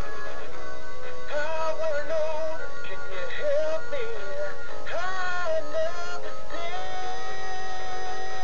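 Animatronic singing bass wall plaque of the Big Mouth Billy Bass kind playing its song: a sung melody over backing music, holding one long note near the end.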